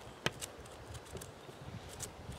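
Mikov Fixir folding-knife blade shaving curls off a wooden stick: one sharp click about a quarter second in, then a few faint ticks as the blade cuts through the wood.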